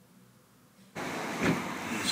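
Faint near-silence, then about a second in, a sudden switch to a steady outdoor rush of wind and background noise, with a single bump about halfway through that rush.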